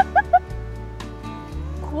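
A person laughing in a quick run of short pitched 'ha' notes that ends about half a second in, over steady background music.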